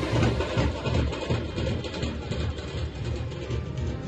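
Drums beating a steady low rhythm, about two beats a second, over a broad noisy din.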